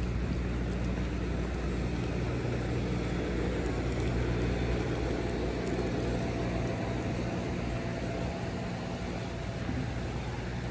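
Steady low mechanical hum under outdoor background noise, with no distinct events.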